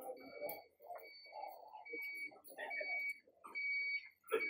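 Faint high-pitched electronic beeping tone, sounding in several short beeps of uneven length, over a low background murmur.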